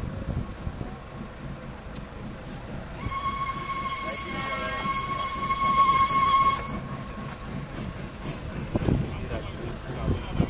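Whistle of an approaching steam rack-railway locomotive: one long, steady blast starting about three seconds in and lasting about three and a half seconds, over a low rumble.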